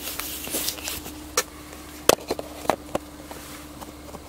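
Handling noise: a few sharp knocks and clicks, the loudest about two seconds in, over a steady low hum.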